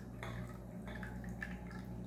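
Olive oil poured in a thin stream from a bottle into a plastic blender jar of eggs and milk: a faint trickle with a few light drips and ticks.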